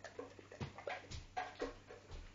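A dog making a run of short pitched sounds close to the microphone, several a second, with a few low thumps among them.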